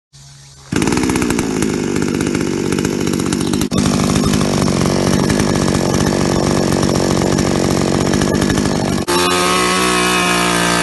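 Two-stroke engine of a BSC Power 5800P petrol chainsaw running at speed. It starts faintly and comes in loud just under a second in, drops out briefly twice, and runs at a steadier, more even note over the last second.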